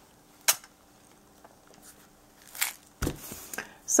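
Seasoning containers and a pickle jar being handled and set down on a table: a sharp knock about half a second in, another about two and a half seconds in, then a short clatter around three seconds in.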